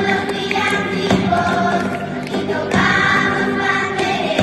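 Children's choir singing a Spanish Christmas carol (villancico) in unison, accompanied by strummed acoustic guitars.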